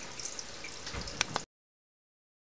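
Faint background noise with two small clicks about a second in, then the sound cuts off abruptly to silence.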